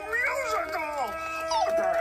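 A voice sliding up and down in pitch in long, howl-like glides, over a held musical note.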